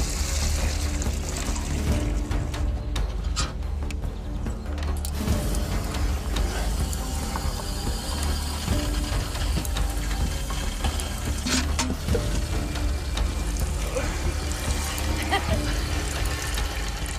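Hand-cranked Diabolo No. 107 cream separator being turned, its gearing whirring and ratcheting, with milk running from its spout; background music plays underneath.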